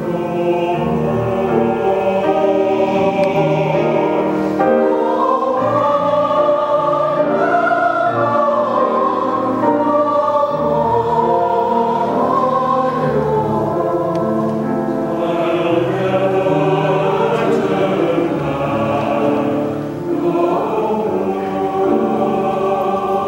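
Mixed church choir of men's and women's voices singing an anthem in parts, with long held notes and the voices moving together.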